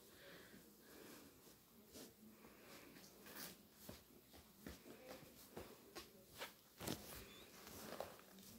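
Near silence with faint, scattered rustles and small clicks of canvas shoes and their packaging being handled, growing a little busier in the second half.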